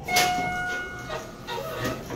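Arrival chime of a 1995 Schindler hydraulic elevator: a single ding made of several clear tones at once, ringing for about a second, followed by the car doors sliding open.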